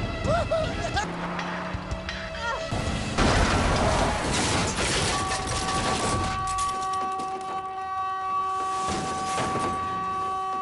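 Film soundtrack of a car crashing and rolling over: a loud sudden crash about three seconds in, with a few seconds of tearing, scraping noise after it, under music. From about five seconds on, a steady held tone sounds.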